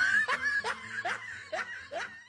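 Snickering laughter, probably an added laugh effect: a string of short rising 'hee' notes about twice a second, growing fainter.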